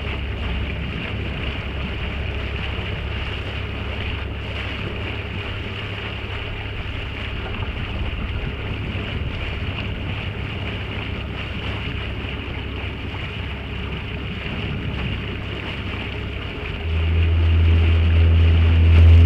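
Small boat under way: wind on the microphone and water rushing past the hull over a steady low drone. About seventeen seconds in, a louder low hum comes in.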